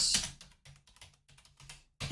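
Computer keyboard typing: a quick, uneven run of keystrokes as a short word is typed, beginning about a third of a second in.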